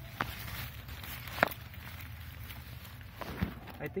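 Leaves and stems rustling as a hand moves through container-grown radish plants, with a few short sharp clicks, the loudest about a second and a half in, over a low steady rumble.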